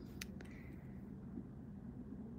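Two light clicks in the first half second as long nails and plastic are handled, then only a low room hum.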